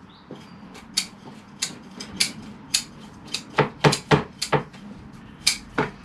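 Metal bonsai tools clicking and scraping as they work through the roots of a root-bound tree in its pot. Irregular sharp clicks, with a quick run of them a little past halfway.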